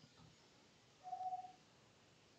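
Mostly near silence, with one brief faint steady tone about a second in, lasting about half a second.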